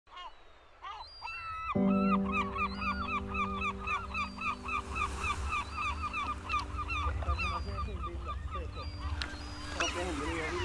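A flock of geese honking, with many short calls in quick succession. A low, held music chord comes in about two seconds in and sounds under them.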